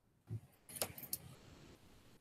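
Faint handling noise: a soft low bump, then a quick cluster of light clicks and clinks about a second in.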